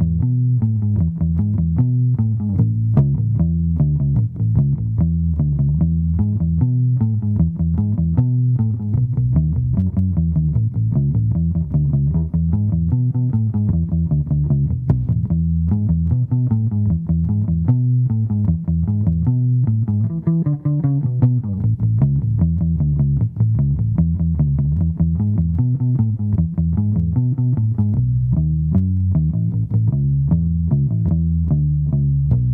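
1974 Höfner 500/1 violin bass, a hollow-body electric bass, played through a Peavey combo amp with its tone set flat: a continuous run of plucked bass notes, several a second.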